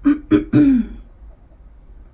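A woman clearing her throat with three quick, loud coughs in the first second, then quiet.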